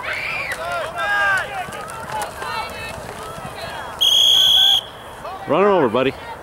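Sideline spectators shouting and calling out during a youth football play. About four seconds in, a referee's whistle gives one loud, steady blast of just under a second, blowing the play dead after the tackle. A loud shout from a nearby voice follows just before the end.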